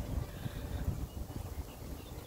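Wind buffeting the microphone outdoors: an uneven low rumble with no clear distinct sound above it.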